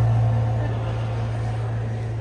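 A single low bass note from the backing music, held steady and slowly fading.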